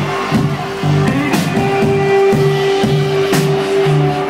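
Live indie rock band playing an instrumental passage with electric guitar, bass and drums, heard from within the crowd. A strong beat lands about once a second under pulsing bass, and a long held note enters about a second and a half in.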